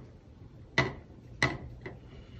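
Two light, sharp knocks about two-thirds of a second apart, then a fainter third: hard craft tools set down or tapped on a wooden tabletop.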